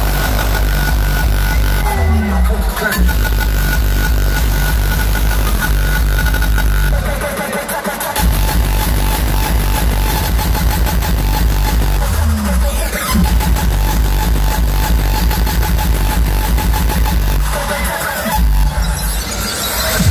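Loud raw hardstyle (rawstyle/uptempo) dance music played over a festival sound system, with a heavy distorted kick and bass. The bass drops out briefly twice, about halfway through and near the end, and falling synth sweeps come in twice.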